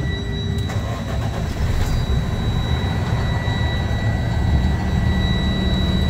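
Cummins ISL9 inline-six diesel engine of a 2015 Freightliner Sportschassis starting about a second in, then settling into a steady idle, heard from inside the cab.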